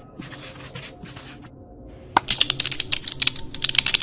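Two short scratchy swishes, then a fast run of computer keyboard typing clicks from about two seconds in: a typing sound effect for on-screen text being typed out.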